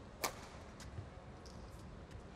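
A single sharp crack of a badminton racket striking a shuttlecock, followed by a couple of faint taps.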